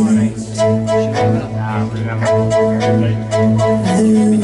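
Live band music led by bowed strings: a low held drone, with a bowed double bass among the strings, under a short repeating higher string figure, with light ticks.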